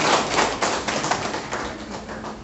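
A crowd clapping in a dense patter of hand claps that dies away near the end.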